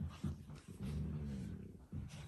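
Dalmatian dogs growling: a few short low grunts, then one low growl of a little under a second in the middle.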